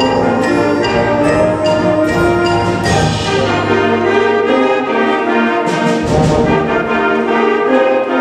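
A middle school concert band playing held chords, with the brass section of trombones, tubas and horns carrying the sound.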